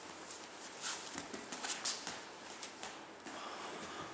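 Two grapplers shifting their bodies on a gym mat: irregular scuffs, taps and clothing rustle, busiest in the middle.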